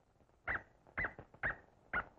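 A series of short yelps, about two a second.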